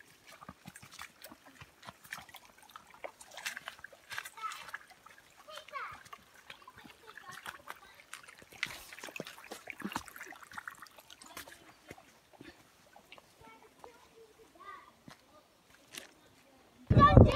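Footsteps on a wet, muddy forest trail, with irregular small splashes and scuffs as feet go through puddles and over stones. Faint voices come and go.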